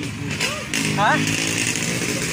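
A small engine running steadily in the background, behind a man's brief questioning "Ha?".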